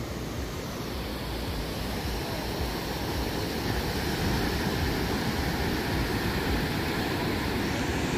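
Small waves breaking and washing up a sandy beach: a steady rushing noise that swells slightly about four seconds in.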